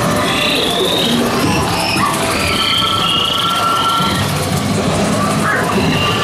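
Boat dark ride's soundscape: a steady low rumble under ambient music, with short gliding whistle-like creature calls repeating every second or so.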